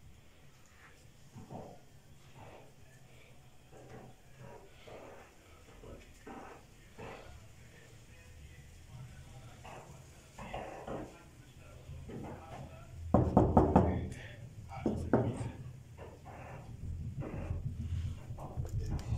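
Indistinct voices in a house, faint at first and louder from about two-thirds of the way in.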